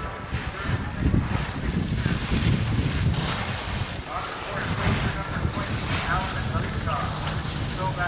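Wind buffeting the camcorder microphone: an uneven, gusty low rumble, with faint voices of people on the slope now and then.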